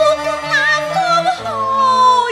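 A woman singing a Cantonese opera (粵曲) melody in long, wavering held notes with vibrato, accompanied by a traditional Chinese instrumental ensemble; the line steps down in pitch about halfway through as the accompaniment changes.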